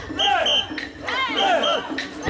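Mikoshi bearers chanting together in rhythm as they carry the portable shrine, many voices shouting in rising and falling calls. Short high-pitched tones repeat in time alongside the chant.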